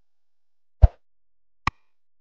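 Animated end-screen sound effects: a single pop with a deep thump just under a second in, then a short, sharp mouse-click effect near the end.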